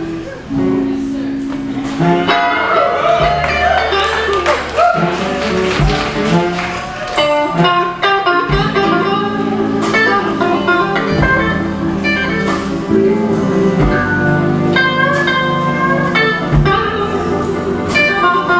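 Live electric blues band playing an instrumental passage, electric guitars to the fore over bass and drums. The full band comes in louder about two seconds in.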